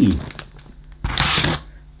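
A single short rasp, about a second in, of packing tape being slit and torn on a heavily taped cardboard box.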